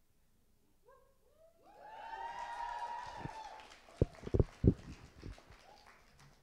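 Several audience members whooping with long drawn-out "woo" calls that rise and hold for a couple of seconds, followed by a few sharp knocks.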